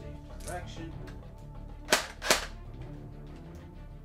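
JG MK36C airsoft electric rifle, a battery-powered G36C replica, test-fired with two single shots about half a second apart, each a short sharp crack. Background music plays throughout.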